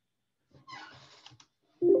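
A Windows alert chime sounds near the end as an Excel circular-reference warning box appears. It starts suddenly and holds two steady pitches as it rings on.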